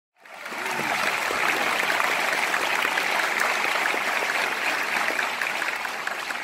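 Audience applauding, rising quickly at the start, holding steady, and thinning out near the end.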